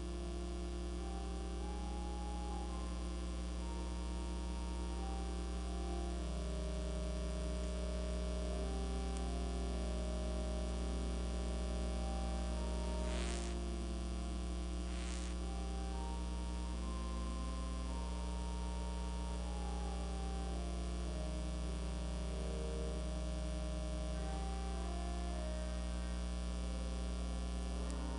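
Steady electrical mains hum, with fainter held tones that shift every few seconds. Two brief soft noises come about 13 and 15 seconds in.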